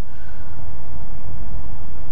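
Wind gusting across the chest-mounted microphone: a deep, steady rumble that swells slightly, with no distinct sounds on top of it.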